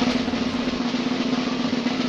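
A snare drum roll, dense and rapid, with a steady low tone held under it.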